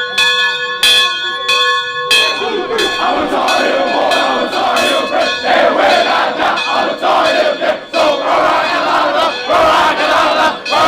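The Victory Bell, a large mounted bell, struck repeatedly, about two strikes a second, each leaving a ringing tone. From about three seconds in, a crowd of players shouts and cheers loudly over the continued ringing.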